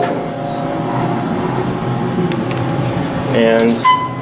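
Steady mechanical hum inside an OTIS Series 1 hydraulic elevator cab, with a brief high beep near the end.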